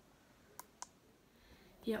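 Two short, sharp clicks about a quarter second apart, a little over half a second in, over faint room tone.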